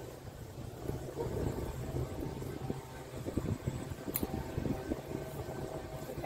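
Wire cage trap rattling with small metal clicks as a carabiner is clipped onto its door handle, with one sharp click about four seconds in, over a steady low rumble.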